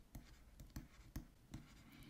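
Faint taps and scratches of a stylus on a drawing tablet as a word is handwritten: a handful of soft, irregularly spaced ticks over near silence.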